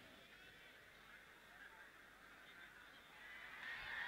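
Near silence: faint distant crowd voices, growing a little louder near the end.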